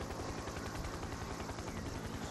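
Helicopter rotor, a steady, rapid and even low pulsing over a background hiss.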